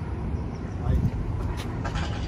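Outdoor ambience: a steady low rumble, rising and falling, with faint voices of people.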